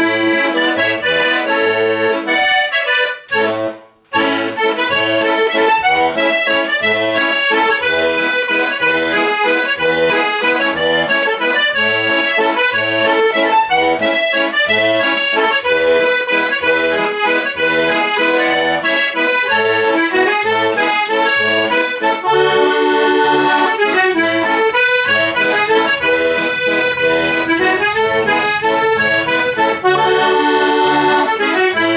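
Red Hohner button accordion playing a tune: right-hand melody over repeated bass notes from the left-hand buttons. There is a brief pause about three to four seconds in, then the playing resumes.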